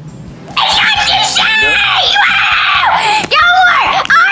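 A person's voice screaming, starting about half a second in and held for nearly three seconds, then a shorter loud yell near the end.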